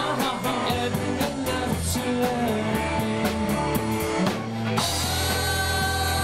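Live rock band playing: singing and electric guitar over a drum kit keeping a regular beat. About five seconds in the drums stop and a chord is held ringing.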